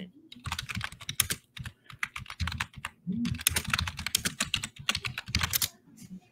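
Typing on a computer keyboard: quick runs of keystrokes with short pauses between them, stopping just before the end.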